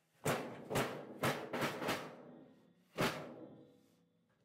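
A run of heavy thumps, each ringing out as it fades: five in quick succession in the first two seconds and a last one about three seconds in.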